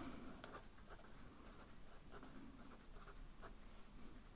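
Faint sound of a fine-tip pen writing on a lined paper notepad, with small strokes as a word is written out.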